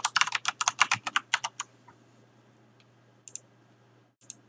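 Typing on a computer keyboard: a quick run of keystrokes through the first second and a half. Two short clicks follow a little past three seconds in.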